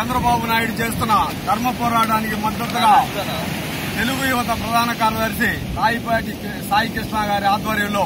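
A man's voice speaking loudly in short phrases, rising and breaking off every second or so, over a steady background noise.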